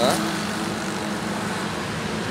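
Steady low hum of a running engine over an even outdoor noise bed.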